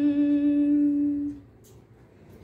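A woman singing without accompaniment, holding one long steady note that ends about a second and a half in, followed by a pause.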